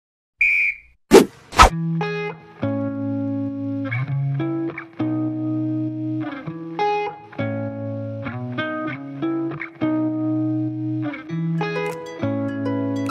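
Background music for a video intro: a short high tone, then two sharp loud hits half a second apart, then sustained chords that change about every second.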